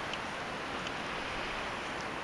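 Steady rushing outdoor background noise, with a few faint light ticks.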